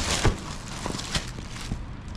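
Clear plastic bag crinkling and rustling as it is gripped and lifted out of a cardboard box, with a few sharper crackles.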